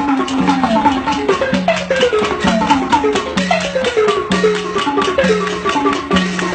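Burmese hsaing waing ensemble playing: fast tuned-drum and gong strokes, many of the notes sliding down in pitch after the strike, over a repeating lower note pattern.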